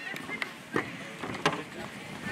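Two sharp knocks on the wooden stage, about three quarters of a second apart, over people talking in the background.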